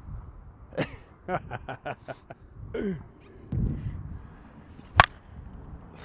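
Short bursts of laughter, then one sharp crack about five seconds in, the loudest sound: a slowpitch softball bat striking a ball.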